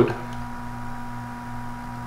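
Steady electrical hum with a faint, constant high tone, the background of the recording between the narrator's sentences.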